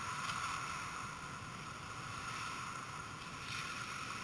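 Indoor ice hockey rink ambience: a steady noisy hum of the arena with faint skate and stick sounds, and two light clicks, one just after the start and one near the end.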